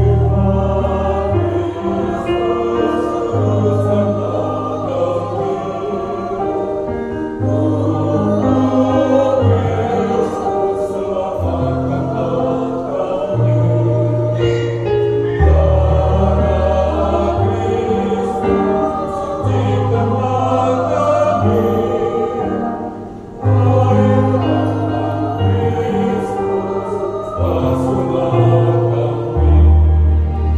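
Mixed choir of men and women singing a church hymn over long held low notes, pausing briefly about three quarters of the way through before going on.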